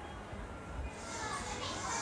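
Faint distant voices, children among them, over a low steady rumble.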